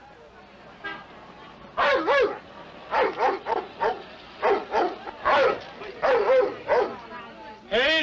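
A German shepherd dog barking repeatedly, about a dozen short barks over some five seconds, some in quick pairs.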